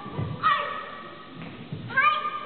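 Children's high-pitched kiai shouts during karate three-step sparring, one sharp shout about half a second in and another starting at the very end, ringing on in a large hall. Dull thumps of bare feet stepping on the wooden gym floor come between the shouts.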